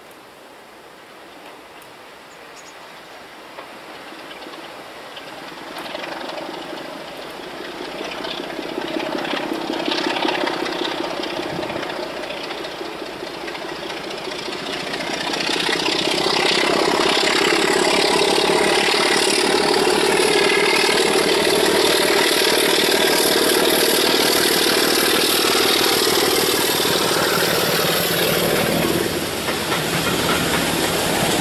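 Class 42 Warship diesel-hydraulic locomotive with its twin diesel engines working under power as it approaches hauling coaches, growing louder until it runs close by. About halfway through a high whine rises in pitch over the steady engine sound.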